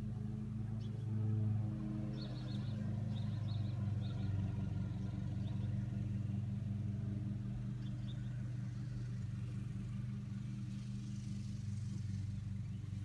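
A steady low mechanical hum, like an engine running, with a few faint high chirps about two to four seconds in.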